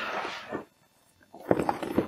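Crinkling and rustling of a waterproof roll-top backpack's stiff fabric as its top is handled and opened: a short rustle at the start, a brief quiet gap, then a burst of crackling in the last half second.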